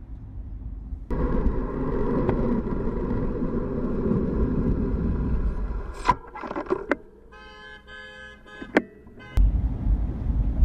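A car horn sounding without a break for about five seconds, followed by a few sharp knocks and a quieter, rapidly stuttering high tone. Low road rumble comes before and after.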